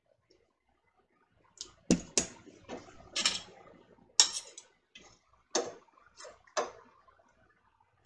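Metal kitchenware clinking and knocking: a metal canning funnel and utensils handled against a stainless pot on a stovetop, giving about a dozen sharp clinks over about five seconds, the loudest near two seconds in.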